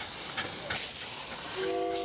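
Live-steam miniature ride-on locomotive passing with a steady hiss of steam and a few sharp exhaust beats. Near the end its whistle sounds a steady chord of several notes.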